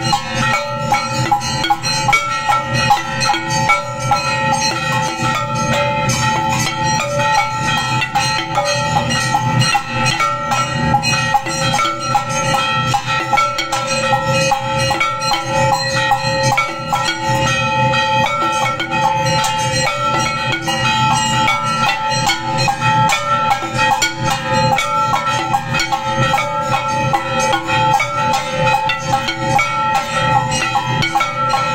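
Temple aarti accompaniment: bells rung without pause, their steady ringing overlaid with fast, dense percussion strokes from cymbals and drums.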